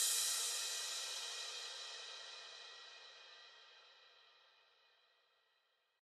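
A crash cymbal rings out at the end of an electro house track with no beat under it, its bright shimmer fading steadily until it dies away about three and a half seconds in.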